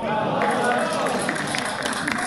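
Men's voices shouting and calling out across an outdoor football pitch, with several sharp knocks among them.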